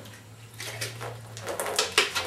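A man drinking water from a small bottle: faint gulping and small ticks over a low steady hum, with a sharper click near the end.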